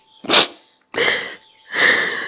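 A woman sobbing: three loud, breathy sobs in quick succession, the last one longer, with a crying voice.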